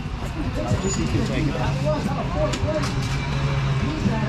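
Indistinct people's voices talking over a steady low hum, with a few light clicks past the middle.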